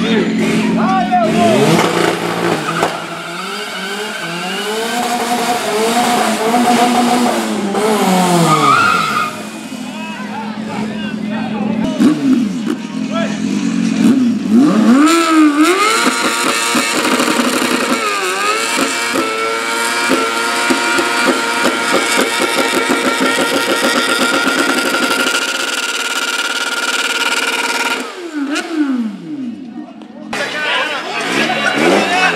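A car engine revving hard in a burnout for the first several seconds, its pitch climbing and dropping. From about a quarter of the way in, a sportbike's engine revs up and is held high and nearly steady through a long rear-tyre burnout, easing off near the end.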